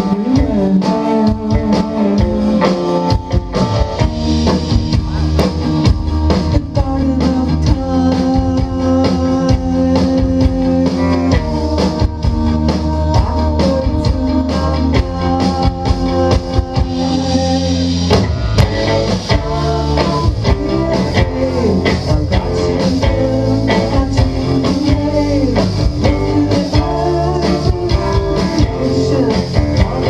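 Indie rock band playing live: electric guitars, electric bass and a drum kit, heard from within the audience.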